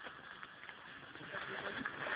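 Faint outdoor background noise, getting slightly louder toward the end, with no distinct event.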